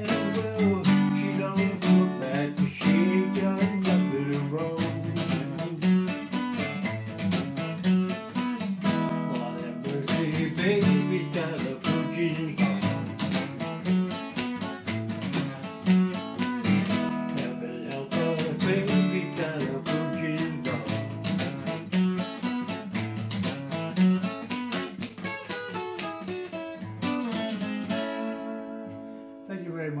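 Solo acoustic guitar, picked and strummed in a lively instrumental passage, ending on a final chord left to ring and fade near the end.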